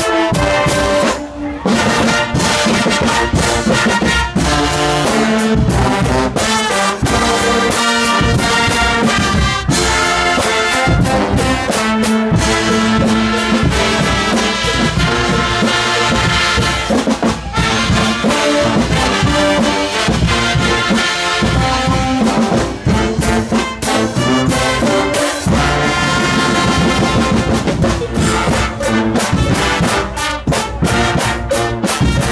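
Guggenmusik brass band playing loudly: massed trumpets and baritone horns over a drum kit with cymbals keeping a steady beat.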